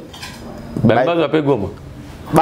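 A man's voice: one short utterance of about a second in the middle, with a light clinking sound before it.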